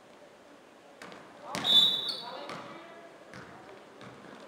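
A referee's whistle blown in one short blast about a second and a half in, echoing in a gymnasium, followed by a couple of sharp knocks of a basketball bouncing on the hardwood floor.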